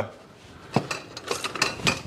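A handful of light clicks and clinks of kitchenware being handled, spread over about a second starting under a second in. There is no motor hum; the food processor is not running.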